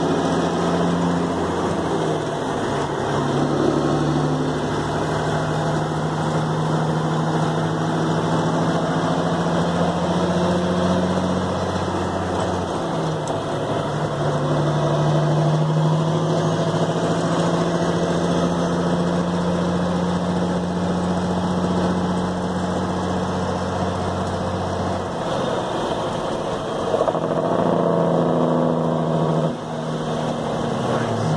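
1964 Peterbilt 351's diesel engine running, heard from inside the cab on the road. Its pitch holds steady for long stretches and steps to a new note several times, about a second in, around the middle, and twice near the end, as the driver shifts a two-stick transmission.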